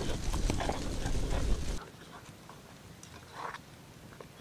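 Wooden spoon stirring thick hot cream in a cauldron as corn grits are tipped in, a wet sloshing with many small knocks of the spoon. Less than two seconds in it cuts off sharply to a much quieter background, with one short soft sound a little past the middle.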